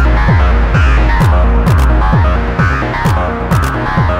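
Hard techno track: a deep kick drum whose pitch drops on each hit, about two hits a second, under sharp hi-hat-like ticks and a repeating synth pattern.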